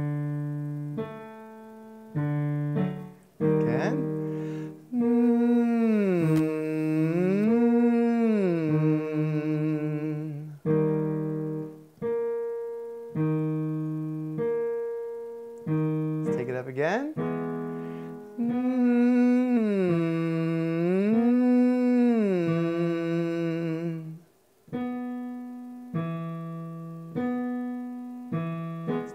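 Piano chords, then a man's voice humming with the tongue resting between the lips, gliding smoothly up and back down over a five-tone scale, as a tongue-tension release exercise. Piano chords and the hummed glide come round twice, with a brief rising vocal slide between the two glides.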